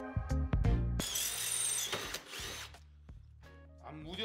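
Power drill with a Gühring twist bit cutting into stainless steel tube: about a second in comes a shrill, high whining cut lasting about a second, which then fades. Background music plays throughout.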